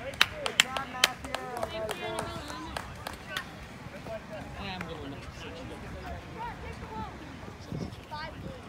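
Overlapping calls and chatter from children and spectators, with several sharp smacks scattered through the first three seconds or so. The voices grow fainter after about four seconds.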